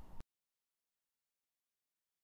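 Near silence: faint room hiss for a moment, then the sound track cuts to dead silence about a quarter second in.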